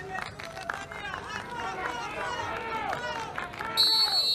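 Several voices in the crowd shouting over each other at a beach wrestling bout, then a referee's whistle blown sharply just before the end, the loudest sound here.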